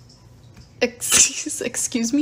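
A person's voice, with a short, sharp hissing burst about a second in.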